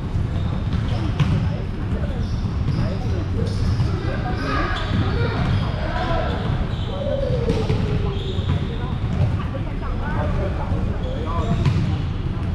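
Volleyball game in a gym hall: a few sharp ball hits and bounces, the clearest about a second in and near the end, with players' voices over a steady low rumble.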